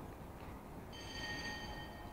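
A single bell-like ring that starts sharply about a second in and fades away over about a second, over a steady low rumble.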